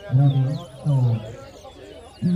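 A man's voice, loud and low-pitched, in two short phrases in the first half, with faint, quick high chirping whistles of caged towa towa (lesser seed finch) songbirds behind it.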